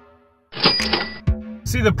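A cash-register "cha-ching" sound effect about half a second in, after electronic music fades out. A low falling tone follows it. Near the end a man starts talking over steady car road noise.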